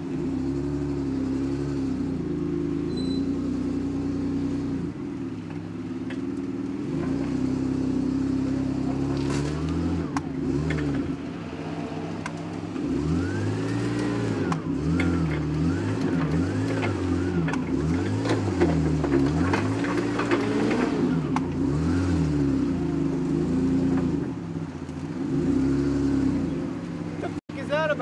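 Hyster forklift engine running steadily, then revving up and down several times in quick succession through the middle, settling back to a steady run near the end.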